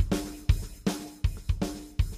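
EZdrummer 2 software drum kit playing a rock loop: kick, snare and cymbals in a steady beat. A phaser effect is on the overhead mics and is being turned down.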